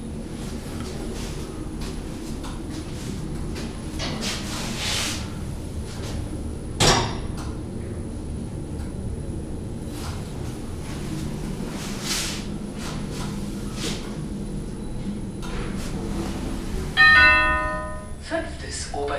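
A 2010 ThyssenKrupp passenger elevator car travelling up, with a steady low running hum and one sharp knock about seven seconds in. Near the end a short bell-like chime sounds as the car reaches the top floor.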